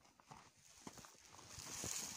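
Soft, irregular footsteps crunching in snow, growing louder, with a rising hiss near the end.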